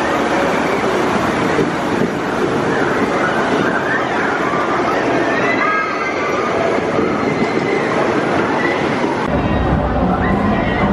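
Roller coaster train running along its steel track: a steady rumble with some wheel squeal, until the sound changes abruptly about nine seconds in.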